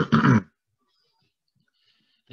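A man clearing his throat once, a short rough burst at the very start lasting about half a second.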